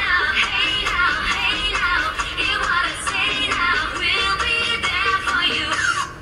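A recorded song with a high-pitched sung vocal melody over instrumental backing, playing as the soundtrack for a dance. It drops away right at the end.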